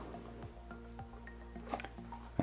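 Faint background music with held notes, with a few soft clicks from the cardboard phone box as its lid is lifted off.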